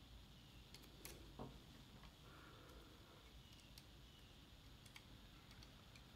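Near silence with a few faint clicks, several of them about a second in: RJ45 Ethernet patch-cable plugs being pushed into the Raspberry Pis' network ports.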